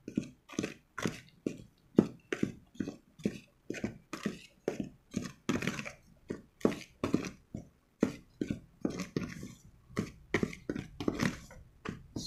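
A metal utensil stirring a dry flour mixture in a bowl, knocking and scraping against the bowl in a steady rhythm of about three strokes a second.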